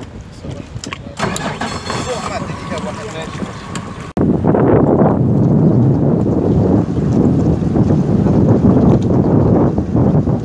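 Wind buffeting the microphone, a loud rushing rumble that starts abruptly about four seconds in. Before it there are quieter voices.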